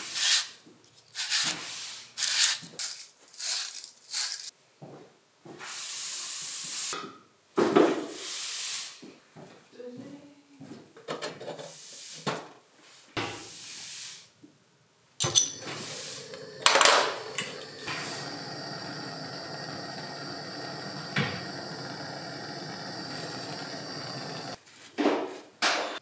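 Repeated scrubbing strokes of a wire fitting brush cleaning copper pipe. About fifteen seconds in, a handheld gas soldering torch starts and burns with a steady hiss for about nine seconds, heating copper joints for sweating.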